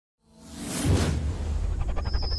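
Logo-intro sound effect: a whoosh swelling up out of silence and peaking about a second in, over a deep, sustained low rumble with a musical sting.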